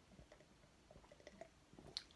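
Near silence with faint scattered small clicks, a little busier toward the end: a man sipping and swallowing carbonated cola from a glass mug.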